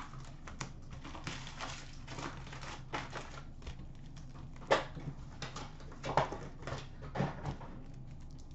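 Scattered light taps, scrapes and rustles of a cardboard hobby box and its card packs being handled. Packs are set down on a glass counter, with a few sharper taps in the second half.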